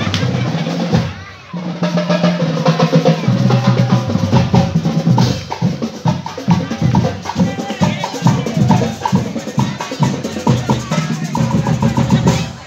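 Marching band of drums and brass, sousaphones among them, playing a rhythmic tune with snare and bass drum beating under a low brass bass line. The music breaks off briefly about a second in, then resumes.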